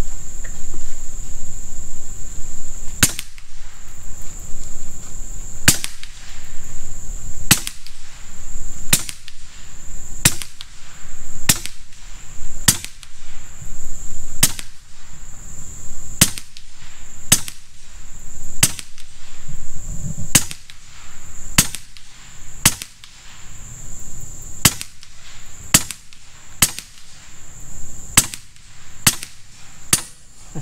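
Huben K1 .22 semi-automatic PCP bullpup air rifle with a moderated barrel firing a long string of about twenty sharp shots, roughly one every second or so, starting about three seconds in.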